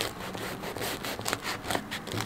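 Knife sawing through the crisp crust of a freshly baked bread roll, giving a quick irregular run of crackles and crunches.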